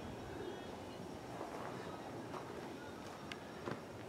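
Quiet outdoor background with a few faint clicks of handling. A small knock comes near the end as a torpedo level is set against the galvanized steel rod.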